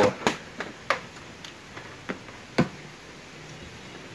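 Key turning in the seat lock of a SYM Excel 2 scooter and the seat latch being released and the seat lifted: a handful of sharp plastic-and-metal clicks and knocks, the loudest about a quarter second in and again about two and a half seconds in.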